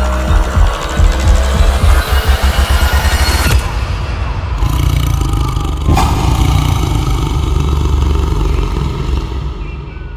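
Trailer score and sound design: a rapid low pulsing build under a rising sweep, cut off abruptly about three and a half seconds in. A heavy hit comes about six seconds in, then a low sustained drone that fades away at the end.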